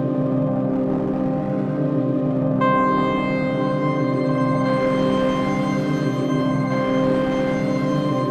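Sustained ambient synthesizer texture from a Bitwig Phase-4 synth played through a multi-tap feedback delay, held notes washing into one another. A new, brighter note comes in about two and a half seconds in and rings on over the drone.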